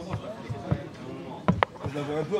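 A few sharp knocks and clacks of statue parts being handled and set down on a table, the loudest two close together about one and a half seconds in, over background voices.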